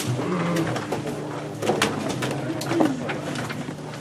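Room noise of people getting up and handling things at a table: scattered short knocks and clicks, with a few brief low, coo-like tones.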